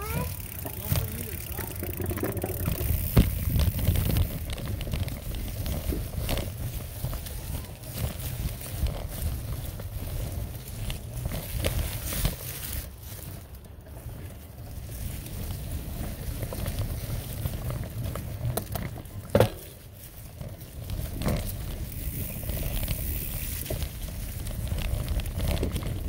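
Mountain bike riding a dirt trail covered in dry leaves: tyres rolling over leaves and ground with a steady rumble of wind on the microphone, and scattered knocks and rattles from the bike over bumps. One sharp loud knock about 19 seconds in.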